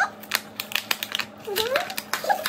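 Cardboard and plastic makeup packaging being handled and torn open by hand: a run of quick, irregular crackles and clicks. A brief voice sound comes near the end.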